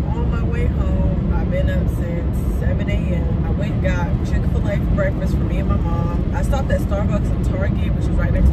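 Steady road and engine rumble inside a moving car's cabin at highway speed, under a woman talking.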